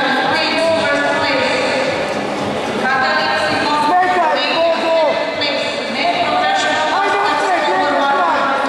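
Raised voices of coaches and spectators calling out over one another to the grapplers, unclear enough that no words come through.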